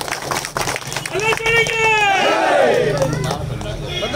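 A crowd of supporters shouting a slogan together, several raised voices overlapping and holding long notes, after a few claps in the first second.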